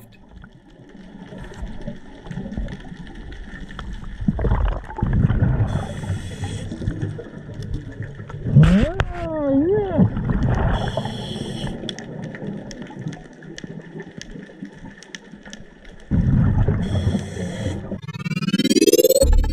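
Scuba diver breathing through a regulator, heard by an underwater camera: a hiss on each inhale, about every five to six seconds, with rumbling exhaled bubbles between, and a few warbling pitched tones near the middle.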